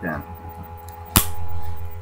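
A single sharp metallic click from the Walther .22 pistol's action about a second in, over a steady low hum.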